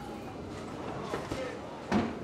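Candlepin bowling ball rolling down a wooden lane, a low steady rumble under the alley's background chatter, ending in one sharp knock near the end as the ball, having veered off line, strikes the side of the pin deck.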